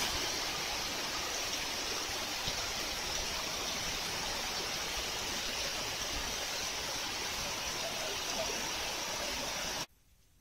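Heavy rain pouring down onto paving and foliage, a steady, even hiss of water that cuts off suddenly near the end.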